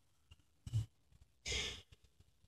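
A Quran reciter breathing into a close microphone in a pause between verses. A brief low puff comes about two-thirds of a second in, then a short, hissy intake of breath near the end, taken before the next phrase.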